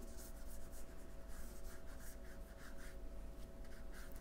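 Damp watercolor paintbrush brushing over watercolor paper in a run of short, soft strokes, blending out the edges of a painted shadow; the strokes thin out after about two and a half seconds.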